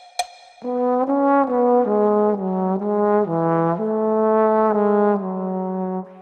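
A single click, then about half a second in a solo trombone enters with a smoothly connected melody in waltz time. The notes move stepwise and settle on a longer held note, and the playing breaks off for a breath near the end.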